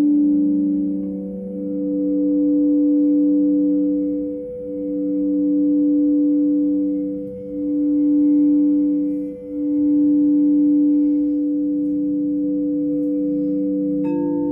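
Crystal singing bowls ringing with sustained pure tones. The loudest tone swells and fades in slow pulses every two to three seconds over steadier lower and higher tones, then settles into an even hum near the end.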